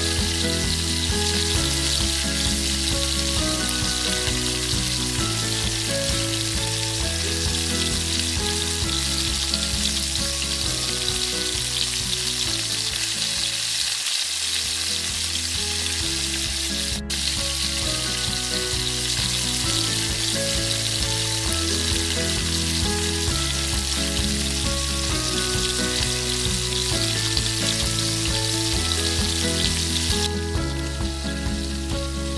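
Chopped onion, garlic, ginger and tomato sautéing in hot oil in a metal wok, giving a steady sizzle as they are stirred with a spoon. Background music with held notes plays underneath.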